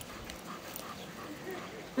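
Dogs at play, heard faintly: short, soft dog sounds, scattered and irregular, with faint voices in the background.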